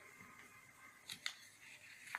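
Near silence with two faint short paper clicks about a second in, as sheets of poster paper are handled.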